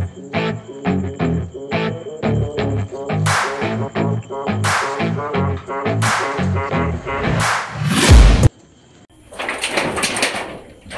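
Background music with a steady pulsing beat, with several swooshing sweeps laid over it. Near the end a swelling boom cuts off suddenly, leaving a brief dip before the music picks up again.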